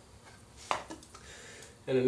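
A single sharp knock about two-thirds of a second in, with faint handling sounds after it, as a plastic wood-glue bottle is set down during the glue-up.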